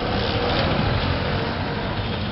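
Busy street ambience: steady traffic noise, with a motor scooter passing close by.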